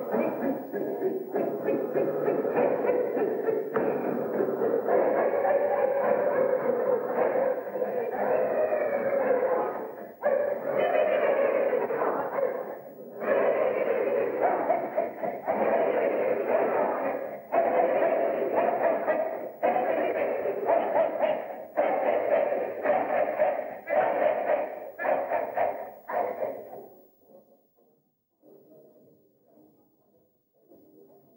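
A group of voices making sustained, wordless sounds together, with the pitch sliding in places, led by a conductor's gestures. The sound breaks off and starts again, first every few seconds and then in shorter and shorter bursts, and stops about 27 seconds in.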